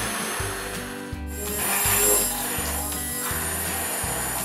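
Hand-held immersion blender running in a glass bowl, chopping frozen blueberries into Greek yogurt. It cuts out briefly about a second in, then runs on with a high motor whine.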